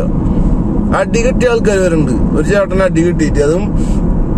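Steady road and engine noise inside a moving car's cabin, with a person's voice talking over it from about a second in.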